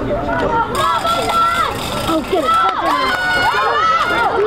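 Several young voices shouting and calling out over one another on a football field as a play runs, their pitch jumping up and down.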